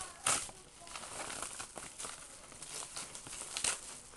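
A white shipping mailer bag crinkling and rustling as hands handle it, with a louder rustle about a quarter second in and another near the end.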